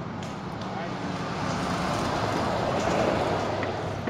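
A road vehicle passing on the street, its noise swelling to a peak about three seconds in and then starting to fade.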